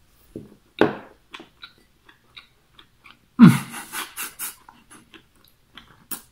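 A man chewing a mouthful of sushi roll loaded with wasabi, with short wet clicks and smacks. About three and a half seconds in comes a loud vocal outburst through the mouthful, followed by a few shorter bursts, his reaction to the wasabi's sting.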